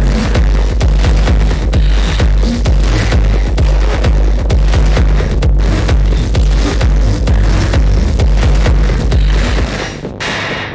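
Industrial techno with a heavy, distorted low end and dense, rapid percussion. Just before the end the bass drops out and the sound thins.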